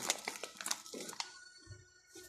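Milk poured from a white jug into a mug of tea: a crackly splashing burst for about the first second, then fading.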